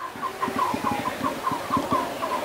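A bird calling in a rapid, even series of short chirps, about six a second, with soft low knocks underneath.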